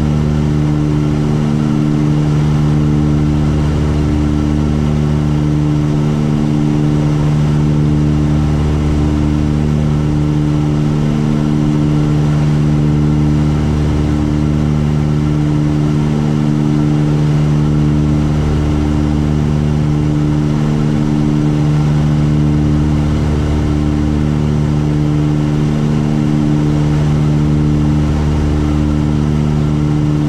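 Tecnam twin-engine light aircraft's engines and propellers droning steadily in cruise on approach, with a low throb that swells and fades every few seconds.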